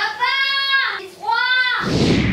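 A high-pitched voice calling out a drawn-out "Papaaa!" twice, each call held for under a second and falling in pitch at its end. A rushing whoosh starts near the end.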